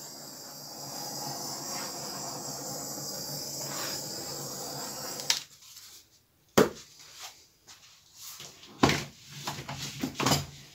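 Handheld butane torch hissing steadily for about five seconds as it is passed over a wet acrylic paint pour, then cutting off suddenly. A few sharp knocks follow.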